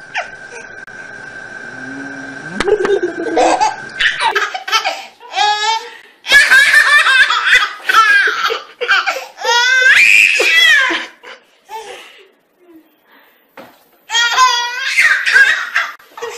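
A baby laughing in repeated belly laughs, together with a woman's laughter. The laughter starts about four seconds in, pauses for a few seconds near the end and then picks up again.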